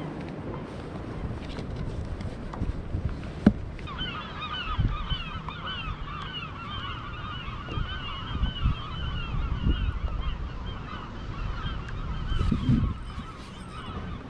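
A dense chorus of many birds calling at once, honking and goose-like, starting about four seconds in and fading near the end, over a low rumble of water and wind. A single sharp knock sounds about three and a half seconds in.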